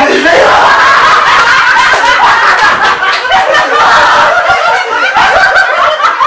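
A woman crying out loudly in distress: high-pitched wailing sobs that break out suddenly and go on without a pause.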